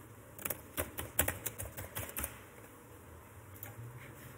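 Keystrokes on a computer keyboard: a quick run of typing in the first half, then a single key press near the end.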